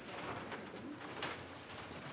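A handheld microphone being handled and passed from one person to another: a few faint knocks and rustles over quiet room sound.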